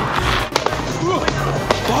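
A few sharp bangs of firecrackers going off in the street, over edited background music with a steady beat and brief shouting voices.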